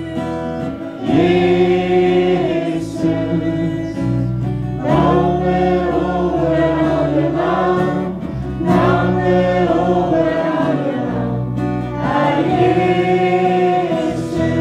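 Live worship band: several voices singing a Norwegian worship song in long held phrases over electric bass and electric guitar.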